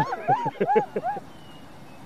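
A puppy whimpering in a quick run of about six short, high yelps over the first second or so.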